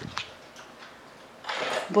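Two brief handling clicks as the camera is moved, then a quiet room until a woman starts speaking near the end.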